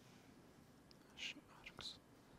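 Near silence, then a few faint whispered sounds in the second half, a man muttering under his breath.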